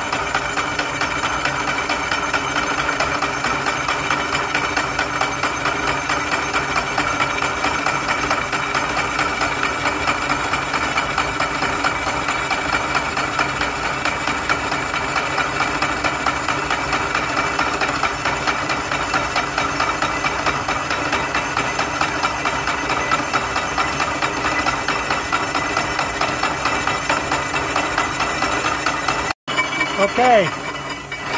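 Vertical milling machine with a face mill taking a steady roughing cut along a steel angle: a constant machine drone with the cutter's chatter and several steady tones. It breaks off for an instant near the end.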